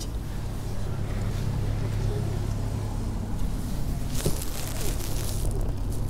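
Car engine idling with a steady low hum. About four seconds in come a click and some rustling and scraping as hands work among the parts in the engine bay.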